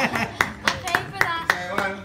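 Hand clapping in a steady rhythm, about three claps a second, with laughing and cheering voices between the claps.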